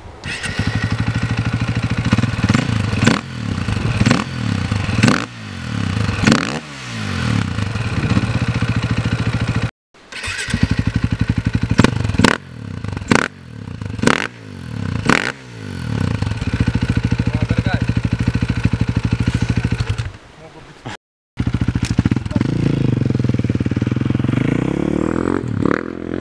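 KTM 450 EXC single-cylinder four-stroke engine running through an Akrapovič exhaust with the dB killer removed. It idles and is blipped repeatedly, each rev rising sharply and falling back, then settles into a steady idle. The sound drops out briefly twice.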